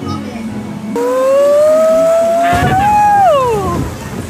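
A single long howl starts about a second in, rising slowly in pitch for about two seconds and then dropping away steeply. A low rushing noise joins it halfway through.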